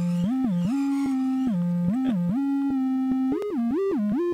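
Electronic music intro: a single synth lead with a theremin-like tone plays a short repeating melody, sliding smoothly up and down between held notes.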